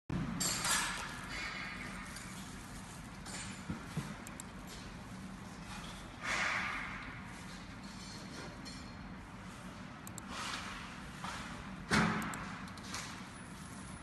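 Steady low machine hum in a workshop, broken by several short swells of hiss and a sharp knock about twelve seconds in.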